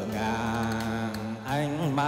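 A man singing a long, drawn-out note with a wavering vibrato in Vietnamese tân cổ (vọng cổ) style, over steady instrumental accompaniment. The held note breaks off about a second and a half in, and a new sung phrase begins.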